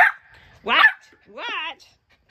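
Poodle puppy vocalizing in three short calls: a brief yip at the start, then two high whining yips about a second apart, the last one longer and falling in pitch.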